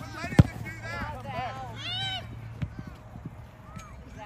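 Soccer ball kicked once with a sharp thud about half a second in, the loudest sound, with a lighter touch on the ball past the middle. High-pitched shouts and calls on the field run throughout.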